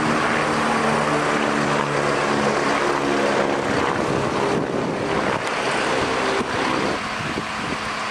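An engine running steadily: a pitched drone over a rushing noise, the drone fading about four seconds in while the rush carries on.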